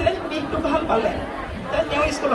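Speech only: a woman talking into a handheld microphone.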